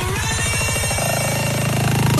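Electronic dance music from a DJ's live remix set: a fast drum roll that tightens in the second half into a continuous buzzing roll, the build-up before a drop.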